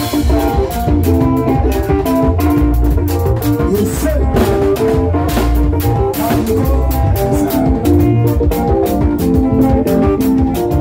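Live band playing music with electric bass guitar and drum kit over a steady beat.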